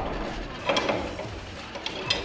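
Steel parts of a Mark 19 grenade launcher clacking as a drive arm is worked into place in the top cover: one sharp metal clack about three-quarters of a second in and a lighter click near the end.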